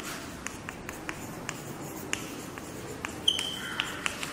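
Chalk writing on a blackboard: irregular short taps and scrapes as the letters are formed, with one short high squeak a little past three seconds in.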